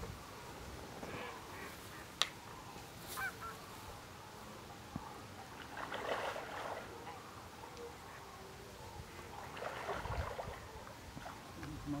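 Distant wild animal calls, with two louder bouts about six and ten seconds in.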